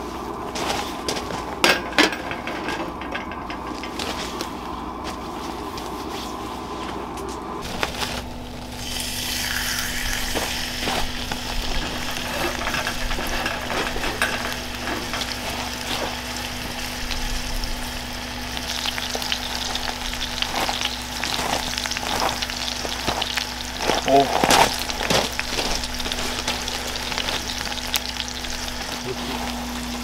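Thick steak searing in a hot cast-iron skillet on a wood stove: a loud, steady sizzle starts suddenly about eight seconds in, as the meat goes into the pan, and carries on. Two sharp knocks come about two seconds in, and a few clicks about three quarters of the way through.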